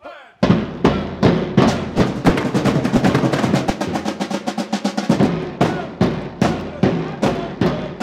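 A drum band playing together on snare drums, a bass drum and a set of marching tenor drums, starting about half a second in with a fast, dense rhythm of strikes.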